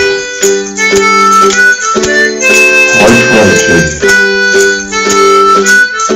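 Harmonica playing held melody notes over strummed ukulele chords, with a tambourine jingling in time: an instrumental break in the song.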